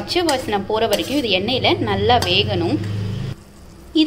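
A person speaking, with a steel spoon clinking and scraping against an iron kadai as a thick masala paste is stirred. A steady low hum under it cuts off suddenly after about three seconds, leaving the end quieter.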